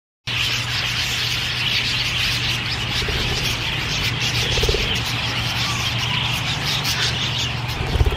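A flock of budgerigars chattering: dense, unbroken twittering that cuts in abruptly just after the start and runs on steadily.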